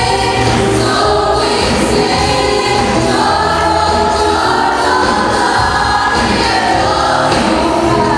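A choir singing a gospel-style song live, with instrumental accompaniment underneath.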